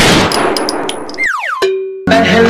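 Edited comedy sound effect: a loud crash with a few clanging strikes, then quick falling whistle-like glides and a short held ding-like tone near the end.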